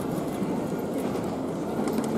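Orlov trotter galloping in harness, pulling a four-wheeled driving carriage fast across arena sand: hooves and carriage wheels make a steady rumble.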